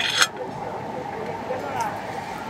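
Sidewalk café ambience: a murmur of other diners' conversation over passing street traffic, with a short crackly noise right at the start.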